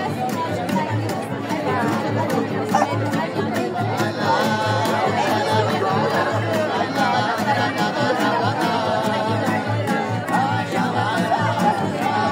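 Live violin and acoustic guitar playing a lively tune, the guitar keeping a steady beat, with people chatting around it.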